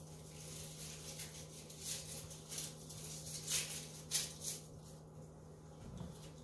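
Quiet kitchen room tone: a low steady hum with a few soft, brief rustles scattered through.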